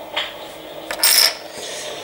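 A casino chip is set down on a wooden tabletop among other chips. There are a couple of light clicks, then a short clatter about a second in.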